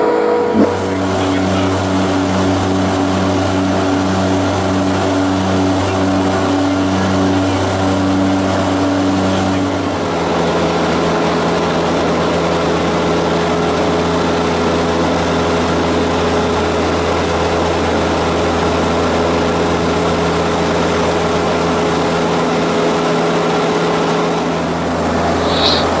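Twin-engine turboprop seaplane (de Havilland Canada DHC-6 Twin Otter) in flight, heard in or near the cabin: a loud, steady low engine and propeller drone. For the first ten seconds it carries a slow regular pulsing beat; about ten seconds in it changes to a steadier drone with a slightly different tone.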